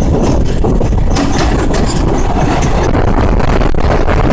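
Express train running at speed, heard from an open coach doorway: a loud, steady rumble of wheels on rails, with a quick run of clicks and rattles over it from about a second in. Near the end the coach runs into a tunnel.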